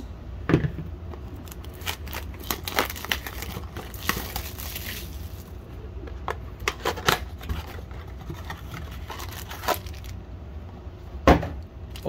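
Hands tearing open a trading-card blaster box: plastic wrap crinkling and cardboard tearing, with scattered small clicks and a hissy rip about four seconds in. A single sharp snap near the end is the loudest sound.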